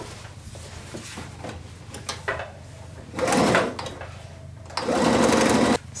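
Pfaff computerised sewing machine stitching a seam in two short bursts, a brief one about three seconds in and a longer one a second later that stops abruptly near the end.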